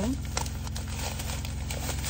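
Light crinkling and rustling of plastic product packaging as items are handled, over a steady low hum inside a car cabin.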